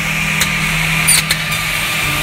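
S8 S468JP edge banding machine running: a steady motor hum with a hiss over it, and a few short clicks about half a second and a second in.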